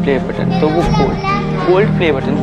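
Children's voices, high-pitched talking and calling out, over steady background music.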